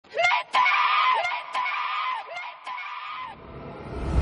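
A young woman crying out in anguish: four high, drawn-out cries, each sliding down in pitch at its end. Near the end a rising whoosh swells in.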